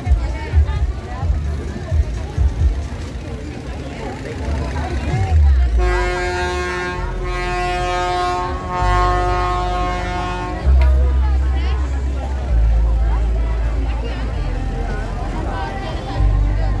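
A horn blows one long, steady note lasting about five seconds, starting about six seconds in, over crowd chatter and booming bass-heavy music.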